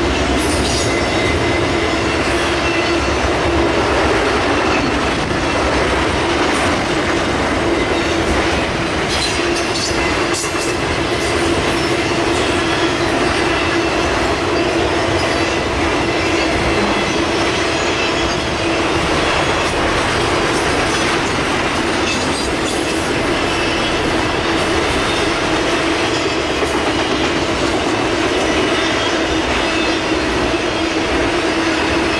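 Intermodal freight train of trailers on flatcars rolling steadily past: a continuous rumble of steel wheels on rail with a steady low hum, and a cluster of sharp clicks about ten seconds in.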